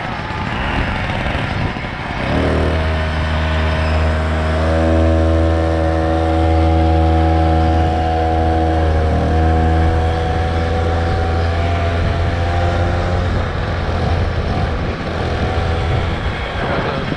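Small 49 cc engine on a motorized bicycle running at a steady speed. Its even note comes in about two seconds in, shifts slightly midway and eases off near the end, over the steady rush of riding noise.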